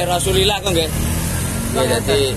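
A motor vehicle engine running steadily as a low rumble, under a man's voice talking.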